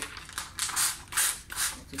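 A hand trigger spray bottle squirting soapy water onto the window and tint film: about five short hissing sprays in quick succession, which keep the film wet so it can be slid into place.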